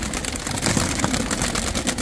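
Domestic pigeons flapping and clattering their wings as they take off out of open cardboard boxes, a quick rapid run of wing claps and rustling, over a steady low rumble.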